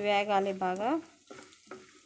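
Wooden spatula scraping an aluminium kadai as it stirs dal grains frying in hot oil, with a faint sizzle and a couple of strokes near the end. A voice says a short drawn-out word in the first second, louder than the stirring.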